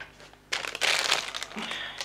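Clear plastic wrapping around a syringe crinkling as it is handled, a rustling burst of about a second starting half a second in.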